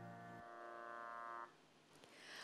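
The last held chord of an electronic keyboard dying away at the end of a song. Its low notes drop out about half a second in, and the rest cuts off about a second and a half in, leaving near silence.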